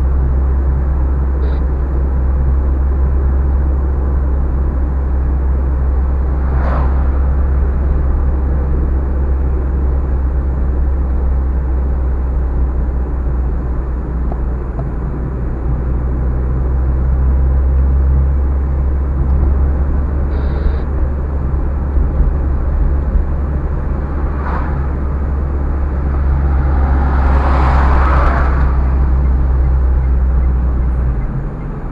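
Steady low drone of a car's engine and tyres heard from inside the cabin while driving on an asphalt road. Near the end, a short swell of noise as an oncoming van passes close by.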